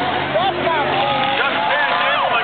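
Grandstand crowd voices close by, many people talking and calling out at once, over the steady running of the race cars' and school bus's engines on the track.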